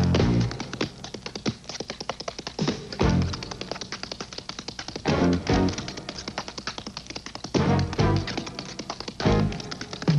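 Tap dancing: metal-tipped tap shoes striking a stage floor in fast runs of crisp clicks. Short, loud band chords cut in several times between the runs.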